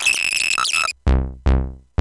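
Moog Sub 37 analog synthesizer: a bright, buzzy held tone for about the first second, then three short bass notes about half a second apart. Each note starts bright and darkens quickly as the filter closes.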